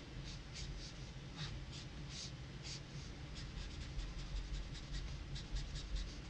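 A marker nib scratching across paper in quick, short hatching strokes, faint and irregular, a couple of strokes a second.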